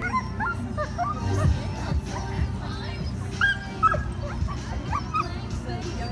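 A dog yipping and whining in short, high calls repeated many times, over music playing in the background.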